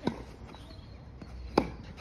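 Tennis ball struck twice by a Wilson Blade racket strung with two extra main and two extra cross strings: two sharp pops about a second and a half apart, the second the louder.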